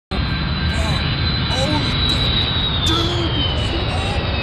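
Jet airliner's engines passing low and loud, a dense noise with a high steady whine that begins to fall in pitch about three seconds in. The sound cuts in abruptly just after the start.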